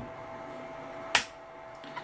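A single sharp click about a second in, over a faint steady hum: the small auto/manual selector switch on a Brasiltec CT2-92001/4P automatic transfer switch being flipped to manual mode.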